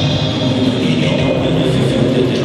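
Rock band playing live through an arena PA, with electric guitars, bass and drums, heard from among the audience.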